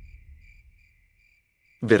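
Crickets chirping in an even, pulsing trill through a pause in the dialogue: the stock 'crickets' of an awkward silence. A low rumble fades away during the first second.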